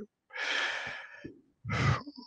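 A man takes a single deep, audible breath lasting about a second in a pause between phrases, heard close on his microphone. His speech starts again near the end.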